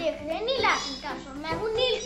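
A boy speaking.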